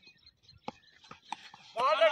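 A few faint short clicks in a lull, then a man's commentary voice starts again near the end.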